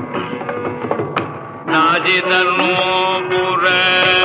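Live Carnatic classical concert music, a ragamalika composition in Adi tala: a softer passage, then the melody comes in louder and fuller just under two seconds in.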